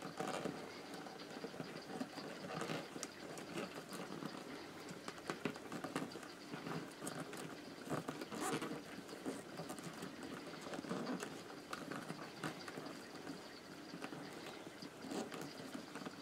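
Rolled paper tubes rustling and clicking as they are woven by hand between the stakes of a paper-tube lampshade on a plastic bowl form, with irregular light taps.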